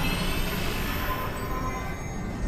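Cinematic sound-design rush under an animated chip reveal: a dense rumbling whoosh with a few faint rising tones, easing slightly toward the end.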